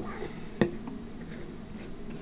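A single light tap about half a second in, an aluminium beer can being set down, over a quiet steady room hum.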